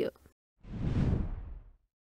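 A whoosh transition sound effect: a single swelling rush of noise, about a second long, that starts just over half a second in, builds and then fades away.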